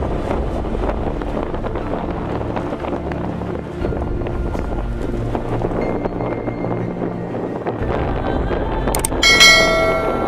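Steady rumble of wind noise on the microphone with a faint low hum. About nine seconds in comes a click and then a short, bright bell-like chime, the sound effect of a subscribe-button animation.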